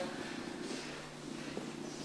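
A faint, steady hiss with a low, even hum underneath: background noise with no distinct event.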